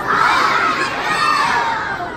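A crowd of children shouting together in unison, calling out a countdown.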